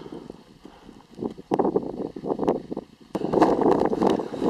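Wind buffeting the camera microphone in gusts, stronger in the second half, with crunching footsteps and clicks of boots on loose moraine rock.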